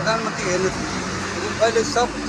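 Speech only: a man talking in Nepali.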